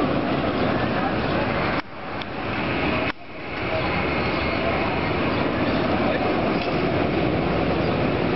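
Loud, steady background din of an amusement park, with voices mixed into a rumbling noise. It cuts out abruptly twice in the first few seconds and swells back each time.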